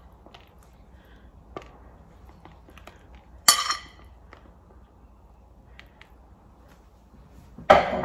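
A metal fork scraping and tapping on a ceramic plate as pieces of steak are pushed off into a plastic container, with soft clicks, one ringing clink about three and a half seconds in, and a louder clatter near the end.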